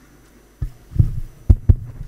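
Handling noise of a handheld microphone being picked up and gripped: four low thumps within about a second, starting after a short quiet.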